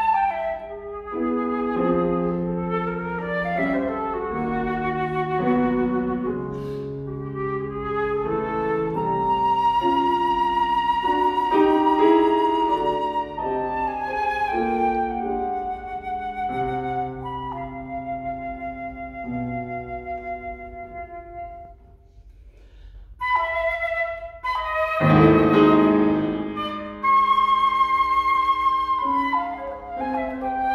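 A flute and a grand piano playing classical music together: the flute carries the melody over piano chords, holding one long note about a third of the way in. Near the last third the music drops almost away for a moment, then comes back loud with a struck piano chord and a quick flute run.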